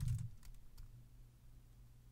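A few light key taps on a MacBook Pro laptop keyboard in the first second as the command 'ionic serve' is typed and entered, over a faint steady low hum.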